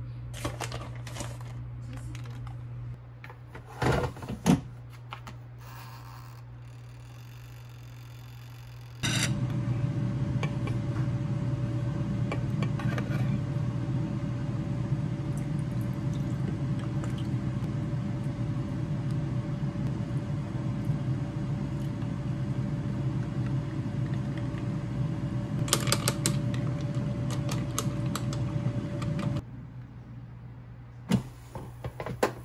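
A few light kitchen clicks and two knocks, then an air fryer's fan running with a steady whir and hum from about nine seconds in. It stops suddenly near the end.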